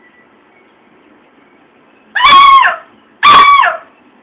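Hunting dog barking twice, about two seconds in and again a second later: two loud, drawn-out barks, each dropping in pitch at the end.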